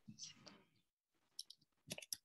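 Faint computer keyboard typing: a few short key clicks in the second half, as a command is typed into a terminal.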